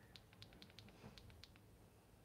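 Near silence: room tone with a quick, irregular run of faint light clicks during the first second and a half.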